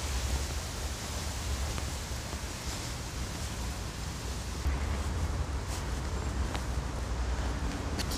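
Outdoor park ambience: a steady hiss with a low rumble of wind on the microphone, and a few faint, short chirps of small songbirds.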